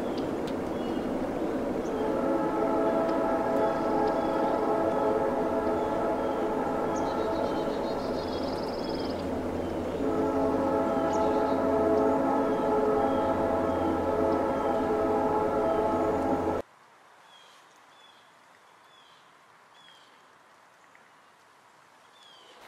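A long, steady horn chord of several tones sounds over a low hum, with a short break about ten seconds in, then cuts off suddenly about three-quarters of the way through. Faint bird chirps carry on after it.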